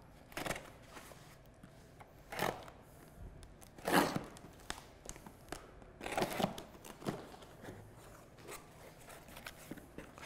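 Small cardboard box being opened by hand: packing tape torn in several short rips, the loudest about four seconds in, with cardboard flaps rustling.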